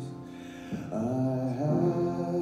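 A young man singing solo, holding long notes: a held note fades away, and a new, louder phrase begins just under a second in.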